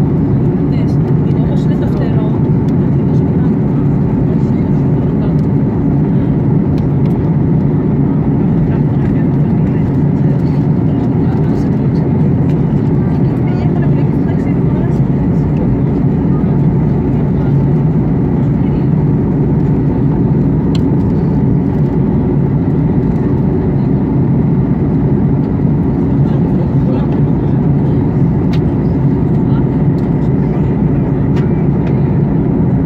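Steady cabin noise of a Ryanair Boeing 737 airliner in descent: the jet engines and the rush of air past the fuselage, heard from a window seat as an even, low rush.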